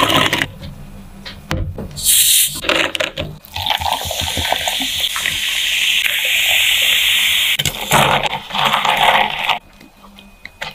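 Frozen fruit balls clinking into plastic cups of ice, then sparkling water poured over them, pouring and fizzing steadily for about four seconds from the middle, with a second short pour near the end.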